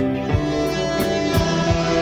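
Instrumental break in a guitar-led song, with no vocals: sustained guitar chords over a steady drum beat at about three beats a second.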